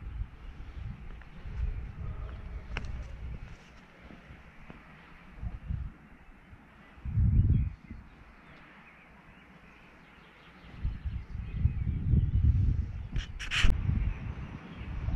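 Wind buffeting the microphone in gusts: low rumbles come and go, the strongest about halfway through, with a lull after it before the gusts pick up again. A few brief crackles sound near the end.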